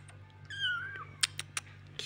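A young kitten gives one high, thin meow lasting about half a second, wavering in pitch, followed by a few sharp clicks.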